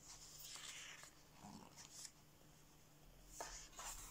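Faint rustling of paper as a colouring book's pages are turned by hand: a few soft swishes over a quiet room.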